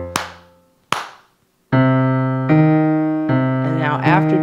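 A low F bass note on an electric keyboard fades out, then two hand claps come a little under a second apart. After a short pause, the steady left-hand walking bass line starts again on the keyboard, in even notes just under a second apart.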